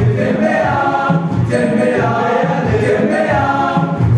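A school choir singing a Swahili song in parts, many voices together.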